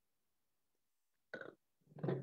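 Mouth and throat sounds of a man tasting a sip of red wine: near silence, then a brief mouth sound a little over a second in and a louder, low throaty sound near the end.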